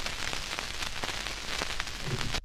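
Stylus riding the worn 78 rpm shellac record past the end of the tune: steady surface hiss full of irregular crackles and pops.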